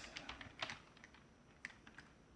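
Faint computer keyboard typing: a few soft, unevenly spaced keystrokes.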